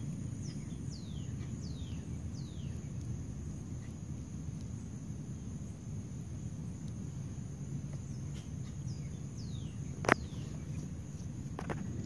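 Outdoor ambience: a steady high-pitched insect drone, with a bird giving short downward-sliding call notes in runs near the start and again near the end, over a low rumble. One sharp tap about ten seconds in.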